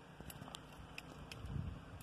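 Faint footsteps and scuffs of a person stepping down a grassy bank onto rocks and crouching, with a few light ticks and a low muffled thump about one and a half seconds in.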